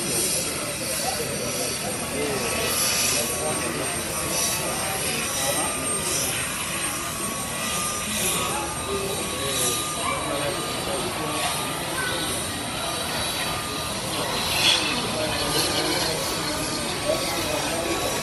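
Jet airliner engines running steadily, with people talking over them.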